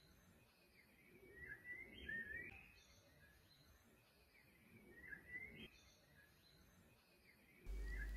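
Faint bird calls: two short runs of chirping, about three seconds apart, over quiet outdoor background.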